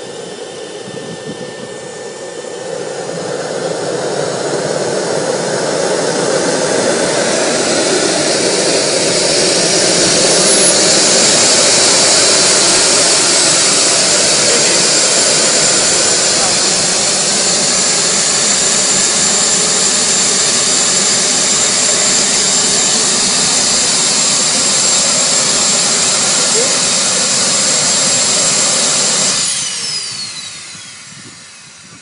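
Model jet turbine starting with a hairdryer blowing into its intake. The sound grows louder over a few seconds as the turbine spools up, then runs loud and steady with a high, even whine from about ten seconds in. It drops away sharply near the end.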